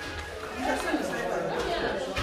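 Indistinct chatter of several people talking at once in a room, with no clear words.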